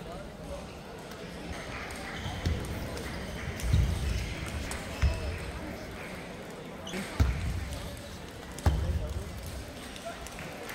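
Table tennis hall ambience: a steady background of many people talking, with scattered sharp clicks of ping-pong balls and about five dull thumps at irregular intervals.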